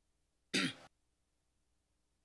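A person clears their throat once, a short rasp with a falling pitch about half a second in, cut off abruptly.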